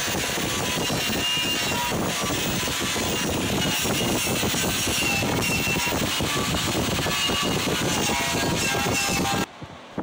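A small sandblaster blasting rust off a steel truck frame: a steady rushing hiss of air and abrasive that cuts off suddenly near the end.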